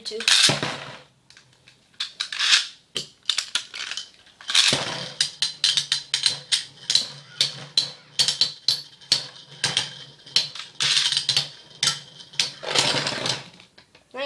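Two Metal Fight Beyblades launched from ripcord launchers into a plastic stadium, then spinning and battling: a steady low hum under many sharp metallic clicks as their metal wheels knock together and rub against the stadium.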